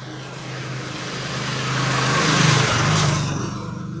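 Motorcycle passing close by: its engine grows louder, peaks about three seconds in, then fades away.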